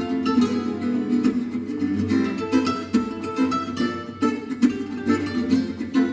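Duet of two acoustic guitars, a jazz manouche guitar and a flamenco guitar, playing quick runs of plucked notes together in a flamenco and gypsy-jazz fusion.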